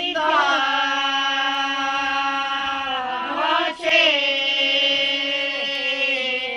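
Traditional Macedonian wedding ritual song from Prespa, sung unaccompanied in long, drawn-out held notes, with a brief break and a new note taken about four seconds in.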